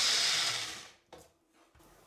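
Small electric mixer with a press-down jar running, its blade whipping soaked cashews and water into a thick cream. The motor stops and spins down about a second in, followed by a short click.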